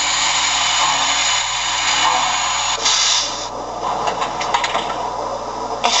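Recorded station ambience played through a model locomotive's onboard sound system: a steady background rush, a short sharp hiss about three seconds in, then a run of light clicks and clatter.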